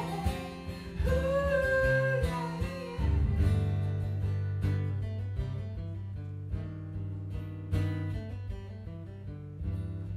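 Live acoustic guitar with a man singing: one sung phrase in the first few seconds, then the acoustic guitar plays on alone, low notes ringing under picked and strummed chords.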